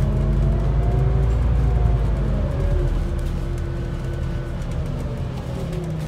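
Scania N280UD double-decker bus's five-cylinder diesel engine and drivetrain heard from inside the passenger saloon while the bus is under way. The engine note rises and falls as it changes speed, and it eases off a little toward the end.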